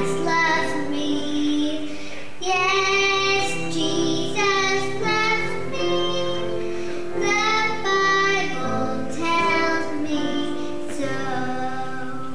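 A young boy singing solo into a microphone in phrases of long held notes over instrumental backing. His last phrase ends near the end.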